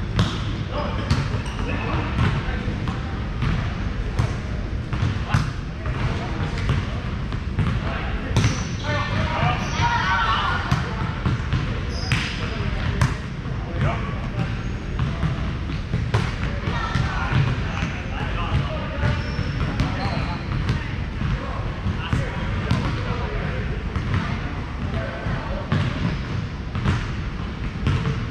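Volleyballs being struck and bouncing on a hardwood gym floor, a string of irregular sharp slaps and thuds across several courts in a large hall, over a steady low hum of the hall and indistinct players' voices.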